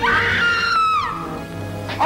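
A woman screams once. The scream starts suddenly, holds high, then slides down in pitch and dies away after about a second, over a dramatic orchestral film score with low sustained notes.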